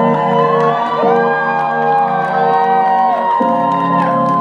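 Live electropop music played over a club PA: held synthesizer chords with notes sliding between pitches.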